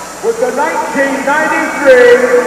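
A man's voice, as from the arena's public-address announcer during the trophy presentation, over a steady crowd hubbub.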